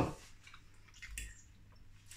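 A person quietly chewing a mouthful of chip butty (chips and gravy in buttered bread), with a few faint soft mouth clicks around the middle.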